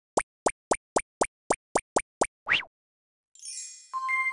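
Cartoon intro sound effects: a quick run of nine short plops, about four a second, then one longer plop rising in pitch. Near the end a shimmering chime sweep swells in.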